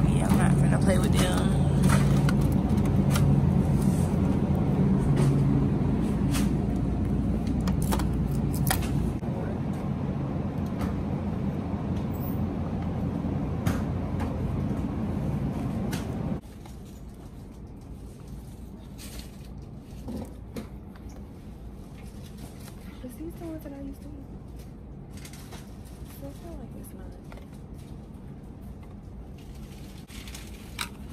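Steady hum of a refrigerated dairy display case with scattered light clicks. About halfway through it cuts off abruptly to a much quieter store background with small knocks and rattles.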